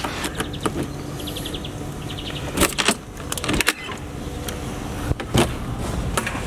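A key unlocking a door: a short run of fast small clicks as the lock turns, then a few sharper clacks of the latch and door as it is opened.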